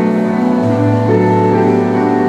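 Piano or keyboard accompaniment playing sustained chords in an instrumental passage between the choir's sung lines, the chord changing about half a second and again a second in.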